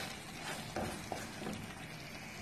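Wooden spoon stirring and scraping a thick, thickening milk mixture (khoya) around a nonstick saucepan, with a faint sizzle as it cooks over low heat.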